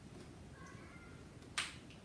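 A single sharp plastic click about one and a half seconds in, as a whiteboard marker's cap is snapped on or off, over faint room tone.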